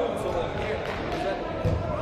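Players' shouts and calls in a large indoor sports hall, mixed with the thuds of a football being kicked and bouncing on artificial turf. A cluster of heavier thuds comes near the end.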